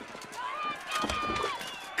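Animated-film soundtrack playing over a video call: faint vocal sounds and two soft thumps in a gap between lines of dialogue.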